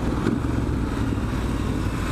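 Triumph Street Scrambler's parallel-twin engine running at a steady pitch while the bike is ridden, recorded from on board.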